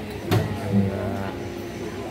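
Passenger lift starting off: a short clunk, then a steady low hum as the car runs.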